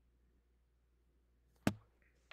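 Near silence with a faint low hum, then a single sharp click about one and a half seconds in.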